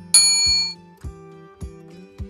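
A bright notification-bell 'ding' sound effect, struck once just after the start and ringing out for about half a second. Underneath, soft background music with a steady low beat.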